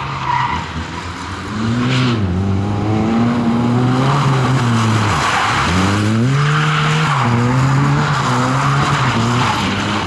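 Opel Corsa rally car's engine revving hard, its pitch rising and falling repeatedly with lifts and gear changes, with a sharp drop about five seconds in before it climbs again. Tyres skidding on the tarmac through the corner.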